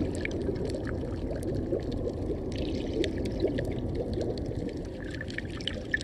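Water heard through an underwater camera: a steady, muffled water noise with many short, faint clicks and crackles scattered through it.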